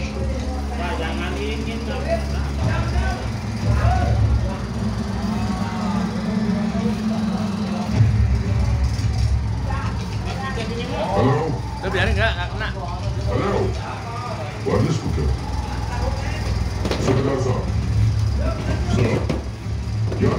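Soundtrack of an Indian film played through open-air loudspeakers: indistinct dialogue over background music and a steady low hum.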